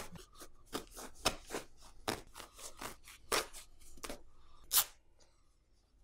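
Scissors cutting through the cloth and shoulder seam of a jacket in a series of short, irregular snips, with the fabric pulled apart by hand. The cutting stops about five seconds in.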